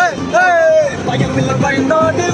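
Several men singing and shouting loudly along to a song, with one drawn-out note about half a second in, inside a car with its running noise underneath.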